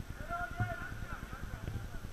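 Distant shouting voices of football players, faint, over a low, uneven rumble on the camera's microphone.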